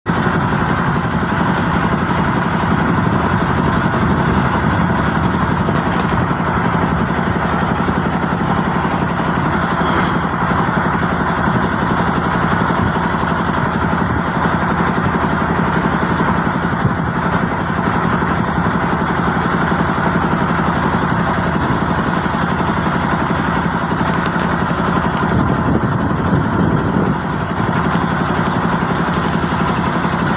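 A river boat's engine running steadily under way: an even, loud drone with a constant low hum.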